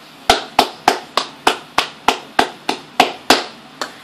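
A person clapping their hands about a dozen times in a steady rhythm of roughly three claps a second, stopping just before the end.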